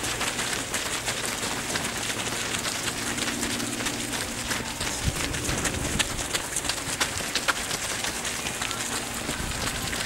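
Footsteps of a large pack of runners on a gravel and grass path: a dense, continuous shuffle of footfalls with many irregular sharp ticks.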